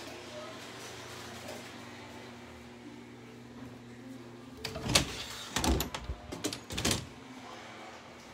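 Closet door being handled: a burst of loud knocks and rattles between about five and seven seconds in, over a steady low hum.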